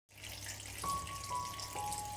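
Steady trickling of water from a small tabletop fountain, its water running down over pebbles. Soft music begins about a second in: three single held notes, each a little lower than the last.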